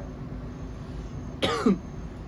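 A man clears his throat once, briefly, about one and a half seconds in, over a low steady background.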